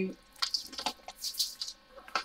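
Plastic multi-compartment storage cases full of diamond-painting drills clicking and rattling as they are handled and slid into a storage bag, a quick run of short irregular clicks.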